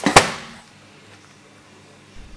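Two sharp swishing hits in quick succession right at the start, the second louder, dying away within about half a second, followed by a faint low hum.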